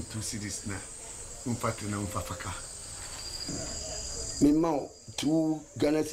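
Crickets chirping steadily in a high, even trill, with short snatches of a man's voice about a second and a half in and again, louder, near the end.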